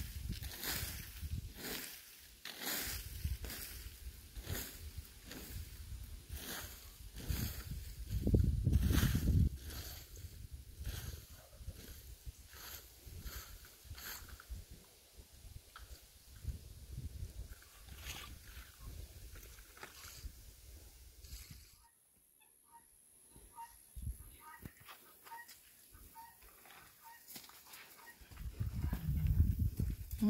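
Plastic leaf rake scratching through dry plant stalks and soil in repeated strokes, about one and a half a second, with a brief low rumble about a third of the way in. The strokes stop about halfway; later comes a faint run of short, evenly spaced high notes.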